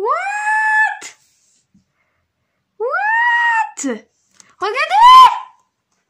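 Three drawn-out, high-pitched exclamations from a man ('waouh', then 'regardez'), each sliding up in pitch and then holding before breaking off. There is silence between them, and no wind noise is heard.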